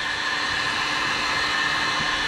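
Electric heat gun blowing steadily with a constant whine, warming a thick windscreen sticker to soften its adhesive before it is scraped off.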